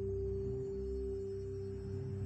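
Soft ambient meditation music: one clear held tone sustained over lower steady tones and a deep drone.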